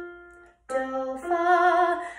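Electronic keyboard's upper note of a rising perfect fourth (do to fa), fading out. A woman's voice then sings the same rising fourth: a short lower note, then a held higher note with vibrato.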